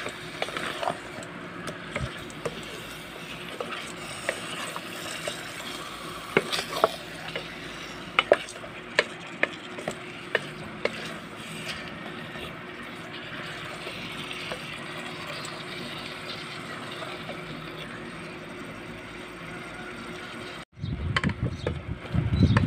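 Chicken pieces sizzling in a metal pot as a wooden spatula stirs them, with sharp clacks whenever the spatula hits the pot. Near the end the sound cuts out briefly and gives way to louder, rapid thuds and knocks.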